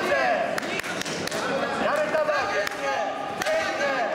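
Men's voices calling out in a large hall with an echo, broken by a few sharp slaps or knocks in the first second and a half and one more later.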